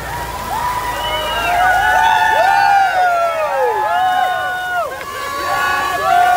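Several men yelling and whooping together, with long overlapping cries that rise and fall in pitch.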